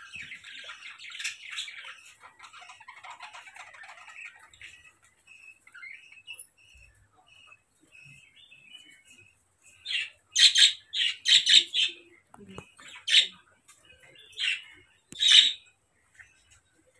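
Small bird calling: a stretch of rapid chattering, then sparse faint chirps, then a series of loud, harsh squawks in quick clusters through the second half.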